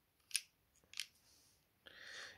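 Two short, sharp clicks about two-thirds of a second apart from hand crimping pliers and a crimp terminal being handled.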